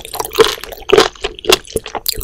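Close-miked wet, squishy chewing of raw seafood such as sea cucumber, spoon worm, sea squirt and sea grapes, with slippery squelches about twice a second.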